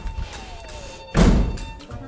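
A faint falling tone, then a single sudden heavy thud about a second in that rings out briefly.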